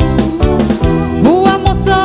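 A live band playing melody-style (tecnomelody) pop from Pará: a steady dance beat under keyboard and electric and acoustic guitars.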